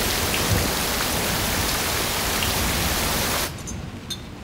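Heavy rain pouring down on a corrugated roof and paving, a steady dense hiss that cuts off sharply about three and a half seconds in.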